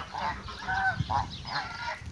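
Brown Chinese geese giving a few short honks while feeding.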